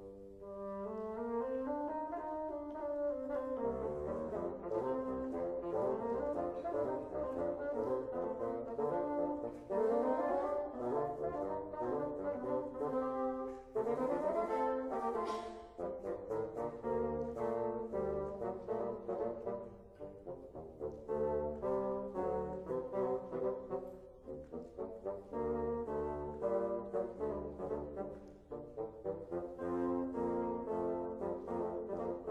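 Two bassoons playing a duet, both parts moving in quick, detached notes with several fast runs up and down.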